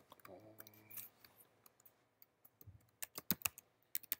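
Computer keyboard keystrokes clicking faintly and irregularly as code is typed, with a short run of louder clicks about three seconds in.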